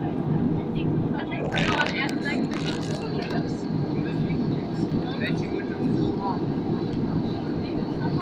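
Steady low drone of a jet airliner's cabin in cruise flight, with indistinct passenger voices over it. A short burst of hiss comes about two seconds in.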